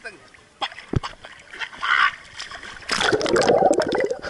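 Pool water splashing and sloshing around a handheld camera, with a loud rush of splashing in the last second as the camera is plunged under the surface.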